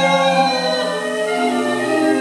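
A choir singing held notes, a recording played back through a compact mini stereo system's speakers; the chord shifts about one and a half seconds in.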